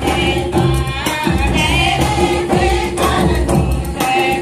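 Dance music: a group of voices singing a folk song together over a repeating drum beat, with a steady held tone underneath.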